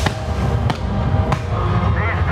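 Fireworks going off: three sharp bangs about two-thirds of a second apart, over music.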